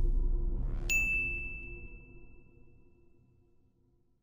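Logo-sting sound effect: a low rumble dies away under a short rising swish that ends in a single bright ding about a second in. The ding rings out high and clear and fades within a second or so.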